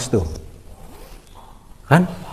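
A man's voice: a word trailing off in a falling tone at the start, a quieter stretch with faint background noise, then another short word starting near the end.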